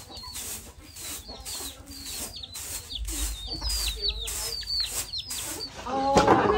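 Chicks peeping over and over in short, high, falling chirps, with a hen clucking low beneath them.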